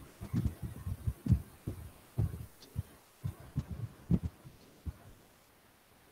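A string of irregular short, low thumps, about a dozen, coming through the meeting audio and stopping about five seconds in.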